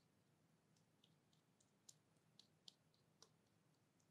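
Faint, scattered sticky clicks of cosmetic cream being worked between hands and fingers, the loudest a few small pops two to three seconds in.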